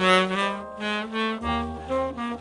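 Background music: a melody on a wind instrument, a new note about every half second, with a low bass part coming in near the end.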